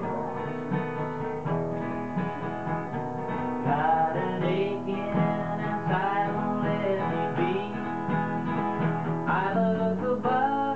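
Live acoustic guitar strummed steadily, with a man singing over it.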